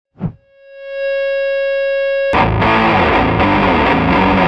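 Intro music: a short hit, then a held pitched note, then a heavily distorted electric guitar riff that comes in loud a little over two seconds in.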